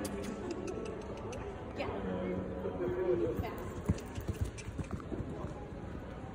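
Pony's hooves beating on soft sand arena footing, a run of dull thuds about four seconds in, under voices talking.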